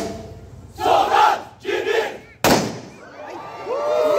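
A squad of soldiers shouting a drill cry in unison, in two loud bursts, followed by one sharp impact during a rifle drill. Near the end the crowd begins cheering.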